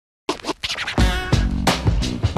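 Electronic intro theme music. It starts a moment in with short, choppy scratch-like effects, and a beat with a deep bass comes in about a second in.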